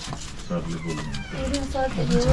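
Indistinct voices of people talking at low level, in short broken phrases.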